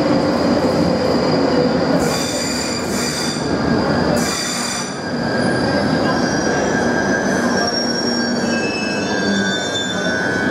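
London Underground 1995 Stock train braking into a platform: a steady rumble of wheels on rail with high-pitched wheel and brake squeals, about two and four seconds in. From about six seconds on, several high tones shift in pitch as the train slows to a halt.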